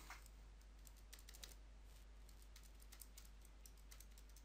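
Faint, irregular clicks of calculator buttons being pressed as a sum is keyed in, over a near-silent room.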